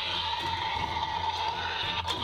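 Electronic roar from the Destroy N Devour Indominus Rex toy's built-in sound unit, one steady held call played as the toy's jaw action is worked.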